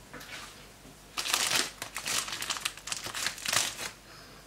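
Plastic wrapping of a packaged whole duck crinkling in irregular bursts as it is handled. The crinkling starts about a second in and is loudest soon after and again near the end.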